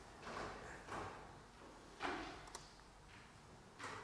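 Faint, scattered rustles and soft knocks, about one a second, each dying away quickly against the quiet room tone of a lecture hall.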